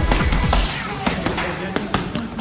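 Boxing gloves smacking against focus mitts in a quick, irregular run of punches, over electronic music whose heavy bass beat fades out about half a second in.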